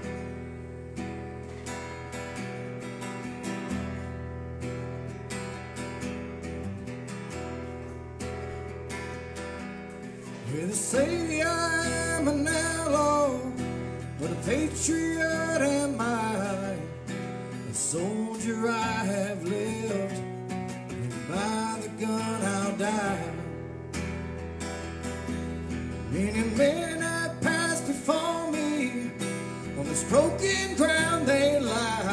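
Acoustic guitar strummed steadily, playing alone for about ten seconds before a man's singing voice comes in with a country-style vocal that goes on in phrases over the chords.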